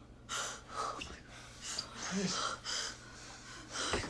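A woman breathing hard in sharp gasps, about six breaths spread over the few seconds, with a brief strained vocal sound partway through.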